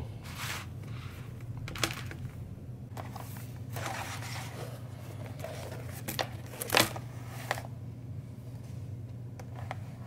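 Leather being hand-stitched and handled: a few short scrapes and rustles of thread drawn through the leather and the leather moved on the table, the loudest about two-thirds of the way through, over a steady low hum.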